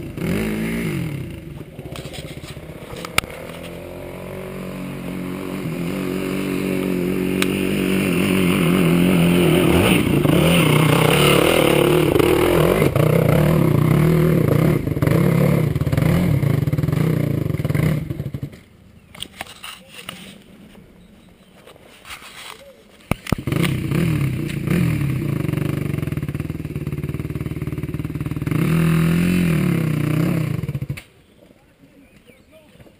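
Enduro dirt-bike engine labouring and revving up a steep rocky climb, growing louder as it comes closer. It drops away sharply for a few seconds about two-thirds through, then runs and revs again.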